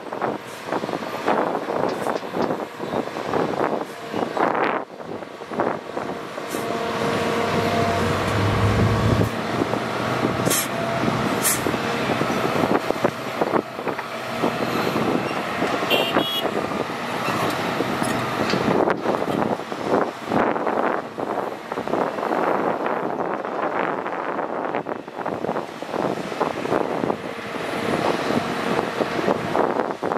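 Hitachi Zaxis 200 hydraulic excavator working under load with its diesel engine and hydraulics running while loading a dump truck, with repeated clatter of dirt and rocks dropping into the truck's steel bed. The low engine sound swells briefly about eight seconds in.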